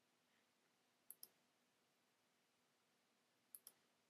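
Near silence broken by two faint double clicks of a computer mouse, one about a second in and one near the end.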